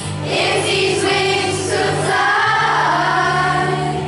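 A children's choir singing a song together in unison over instrumental accompaniment.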